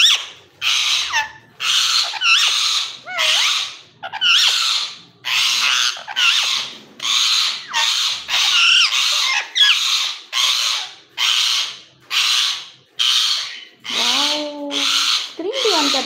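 Rose-ringed parakeet giving a long run of short, raspy, squeaky calls, nearly two a second, with a lower, voice-like call near the end.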